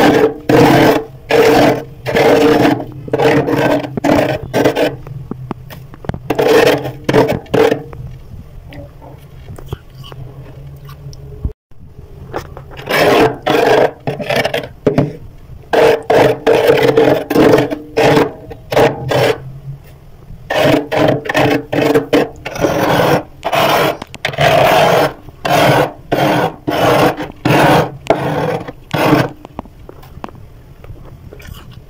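Big spoon scraping thick, flaky frost off a freezer wall in quick repeated strokes, with a pause of a few seconds about a third of the way in.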